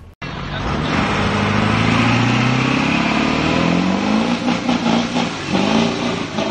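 A motor vehicle engine accelerating hard, its pitch rising steadily for about three seconds, then revving up and down.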